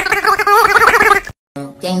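A dog howling while a hand wobbles its lips and jowls, turning the howl into a warbling, gargle-like wail whose pitch wavers up and down. It cuts off suddenly a little past halfway and gives way to music with a rattling beat.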